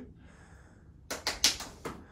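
A quick run of about four hand claps in under a second, starting about a second in.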